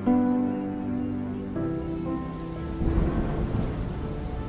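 Soft background music gives way, about halfway through, to the sound of a storm: rain with a low rumble of thunder building.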